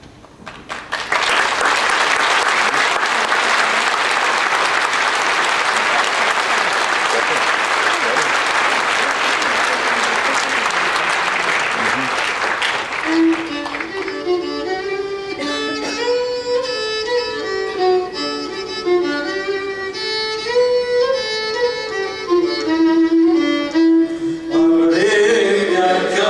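Audience applause, loud and steady for about twelve seconds, then dying away as a slow melody with long held notes begins.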